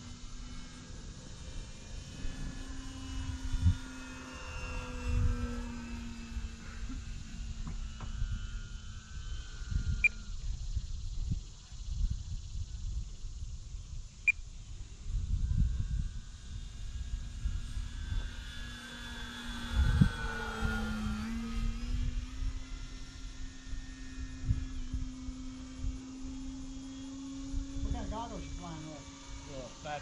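Electric motor and propeller of a small RC biplane droning steadily in flight, its pitch shifting a little with the throttle. A close pass about two-thirds of the way in makes the higher sound sweep down and back up. Wind buffets the microphone throughout.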